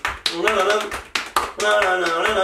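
Several people clapping their hands in a rhythm while a man sings along with held, wavering notes.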